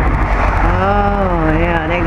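A voice speaking from about half a second in, over a steady low rumble of wind buffeting the microphone.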